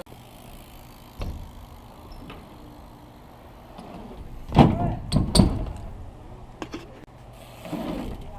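BMX bike tyres rolling over a concrete skatepark with a steady low rumble, and two loud knocks a little past halfway, less than a second apart.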